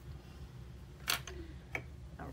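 Two light clicks, a sharp one about a second in and a smaller one near the end, as paintbrushes are handled and set down on the tabletop, over a low steady hum.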